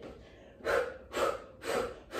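A woman's short, sharp breaths, about two a second, in rhythm with the pulses of a core exercise. She is breathing hard under the effort.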